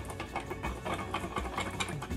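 A whisk beating a balsamic vinaigrette of vinegar, olive oil and Dijon mustard in a stainless steel bowl, in rapid, rhythmic strokes that clatter against the metal.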